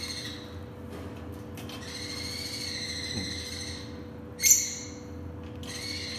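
Cockatiels giving long, drawn-out calls, each held for a second or two, with a short, louder screech about four and a half seconds in, as the birds react warily to a finger at the cage bars.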